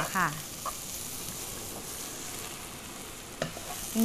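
Salmon and mixed mushrooms frying in butter in a pan over low heat: a steady soft sizzle, with a wooden spatula stirring and scraping against the pan.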